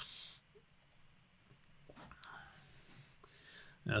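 A short breath out, then a quiet room with a couple of faint computer mouse clicks near the end.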